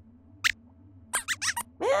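Squeaky character-voice sound effect of a robot lab-rat puppet: one short high squeak about half a second in, then a quick run of about four squeaks.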